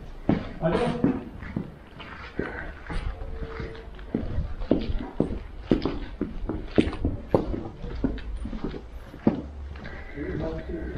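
Footsteps on hard paving, an even walking pace of about two steps a second, over a low rumble.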